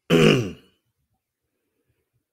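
A man clearing his throat once, a short, loud burst of about half a second near the start, falling in pitch.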